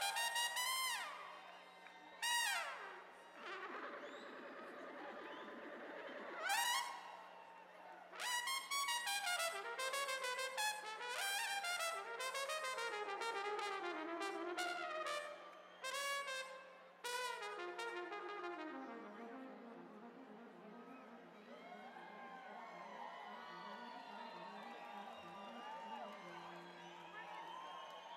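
Solo trumpet playing fast runs, rapid repeated notes and sweeping upward rips that ring out with reverb, over a faint steady low hum. The playing grows softer from about nineteen seconds in.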